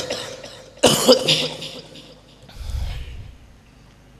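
A man coughing close to a microphone: a sharp cough at the start, another burst of coughs about a second in, then a low rumble near three seconds.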